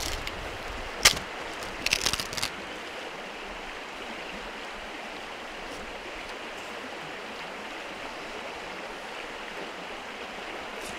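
A wooden baton strikes the spine of a multitool blade once with a sharp crack, followed about a second later by a short run of cracking snaps as the green grand fir stave splits. After that only a steady rush of background noise remains.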